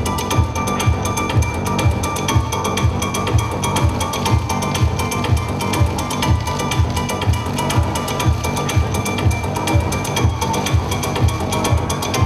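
Electronic runway music: a steady kick drum at about three beats a second under a dense, fast clicking, ratchet-like texture.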